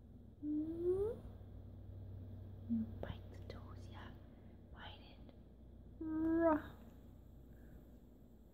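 A woman's wordless vocal sounds and whispering: a short rising "hm?" about half a second in, soft whispered breaths in the middle, and a held "mm" at about six seconds.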